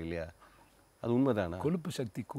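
Speech only: a man talking, with a pause of under a second near the start.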